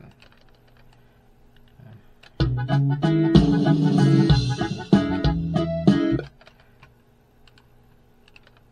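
Norteño arrangement playing back from a recording session: a drum fill loop with pitched instruments. It starts about two and a half seconds in and stops abruptly about four seconds later, with a few faint clicks before it.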